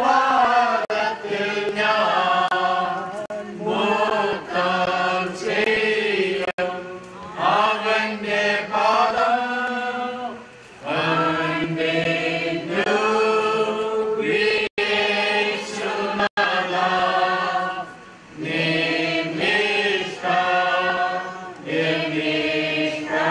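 Voices chanting a slow funeral hymn together in long phrases of held notes, with short breaks between the phrases.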